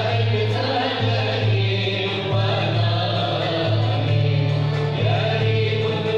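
An Andalusian music orchestra of lutes and bowed strings playing, with the ensemble singing together. Sustained notes over a bass line that changes pitch about once a second.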